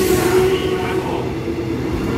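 Passenger train carriages moving along the platform, a continuous rail rumble with a steady tone running through it and a brief hiss in about the first half-second.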